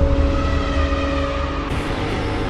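Cinematic intro sound effect: a loud, deep rumbling rush of noise with a few steady held tones in it, brightening about 1.7 s in.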